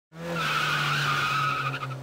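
Cartoon sound effect of a race car driving in: a steady engine tone with a squealing tyre skid over it. It fades away near the end.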